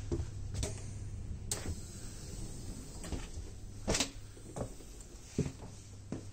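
Sliding doors between carriages of a Finnish InterCity double-decker train opening, with scattered clicks and knocks, the loudest about four seconds in, over a steady low hum.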